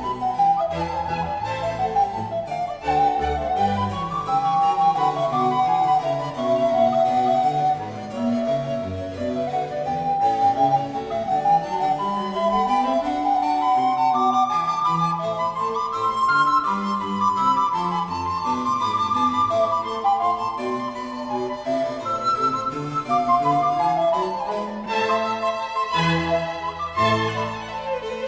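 Baroque chamber music: a flute melody over plucked harpsichord chords and strings. About a second before the end the texture changes as a new passage with violin begins.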